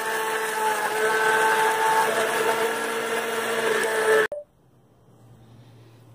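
Electric countertop blender motor running steadily with a whine, blending apple pieces with water. It cuts off suddenly about four seconds in, leaving a faint hum.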